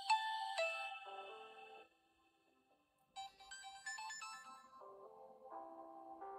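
Samsung Galaxy S8 Active's built-in ringtone playing as a preview through the phone's speaker: a bell-like electronic melody that fades out about two seconds in, then after a short pause another run of melodic notes starts.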